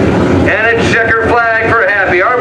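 A track announcer's voice over the public-address loudspeakers, with the engines of Modified race cars running underneath.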